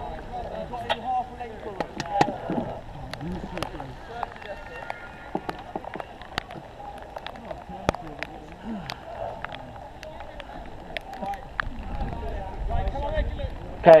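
Faint, indistinct voices of the rowing crew talking among themselves while the boat sits at rest. Scattered sharp ticks and clicks run through it, and a low rumble builds near the end.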